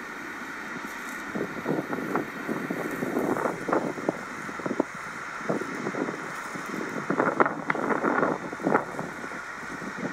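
Wind buffeting the microphone outdoors, under a steady rush of noise broken by irregular rustles and knocks.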